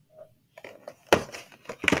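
Small objects and packaging being handled on a tabletop: light rustling and clicking, with two sharp knocks, one just after a second in and one near the end.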